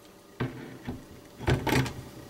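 A clamped jig-head mold held in locking pliers knocking against a stainless steel kitchen sink as it is set down in cold water: one sharp click, then a louder clatter about a second and a half in.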